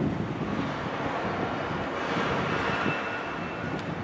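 City street traffic noise with wind on the microphone; a passing vehicle swells about halfway through, carrying a faint high whine.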